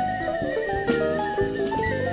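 Live jazz band playing: quick runs of keyboard notes over bass, guitar and drums, with a high, quickly wavering whistle-like tone held above the band throughout.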